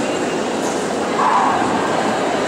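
A dog barks once, a little over a second in, over the steady murmur of a busy indoor hall.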